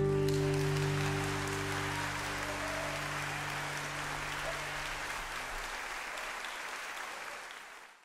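The final chord of a folk band (acoustic guitars, upright bass, banjo, violin) rings on and dies away over the first few seconds while an audience applauds. The applause carries on and fades out near the end.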